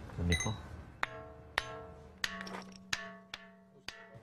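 A small hand hammer striking a large Pentelic marble block about six times, each blow ringing on with clear, steady tones and sounding like a bell. This is the ring of sound stone: a hidden vein would make the block sound quite different.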